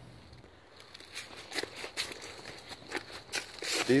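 Footsteps: a string of soft, irregular crunching steps that begins about a second in.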